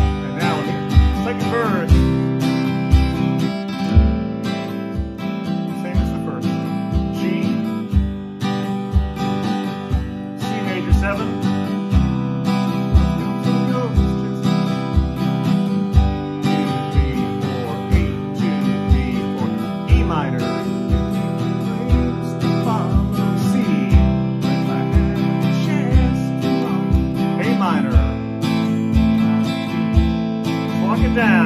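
Steel-string acoustic guitar strummed with a pick through the chorus chords at an upbeat tempo, with a steady low bass-drum thump from a foot stomp box on each beat.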